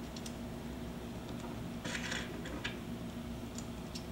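Small brass nuts and lock washers being fitted by hand onto the threaded studs of a copper grounding strap: a scatter of light metallic clicks and a brief scrape about two seconds in, over a steady low hum.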